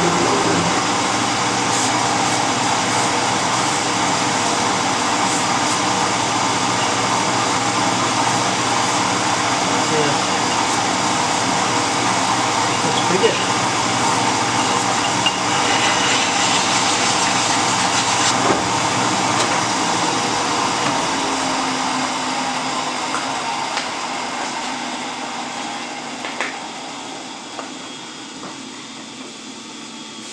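Cincinnati metal shaper running, its ram stroking back and forth through a very light finishing skin pass on steel tool squares. Steady mechanical running noise dies away over the last third as the machine is shut down, and a few light knocks follow.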